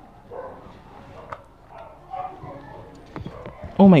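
Faint plastic clicks and handling of a Nerf blaster as batteries are fitted into it, under low muttering, with a loud spoken exclamation near the end.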